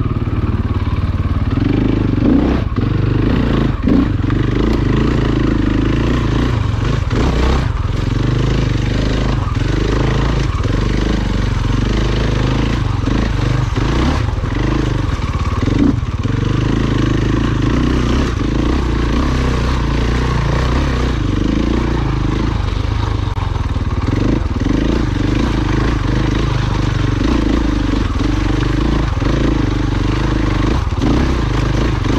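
KTM enduro dirt bike engine running at low to middling revs, the throttle rising and falling as the bike climbs a rough, rocky trail. Occasional knocks and clatter come from the bike going over rocks.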